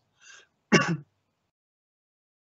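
A man clears his throat with one short cough.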